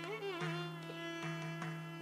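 Carnatic concert music in a short gap between sung phrases. A steady drone holds under a gliding melodic line that fades out, with a few soft drum strokes.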